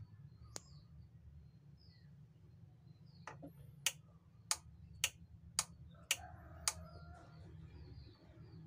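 Knob of an old Panasonic portable transistor radio being worked, giving a run of seven sharp clicks about two a second in the second half. Small birds chirp faintly over a low steady hum.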